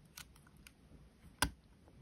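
A few faint plastic ticks, then one sharp click about one and a half seconds in, as a MacBook arrow keycap is set onto its raised scissor-mechanism clip.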